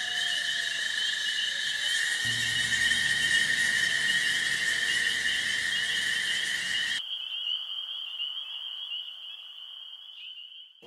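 A steady, high-pitched chorus of night insects trilling over a hiss, with a low hum underneath from about two seconds in. About seven seconds in, part of the chorus, the hiss and the hum cut off suddenly, leaving a single thinner trill that fades.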